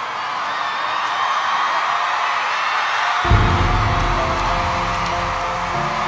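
Studio audience cheering and applauding at the end of a song. About three seconds in, music with a deep bass comes in under the cheering.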